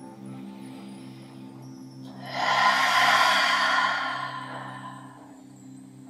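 A long, breathy sighing exhale of about two and a half seconds: it swells in about two seconds in and fades out. Under it, soft background music holds a low, steady drone.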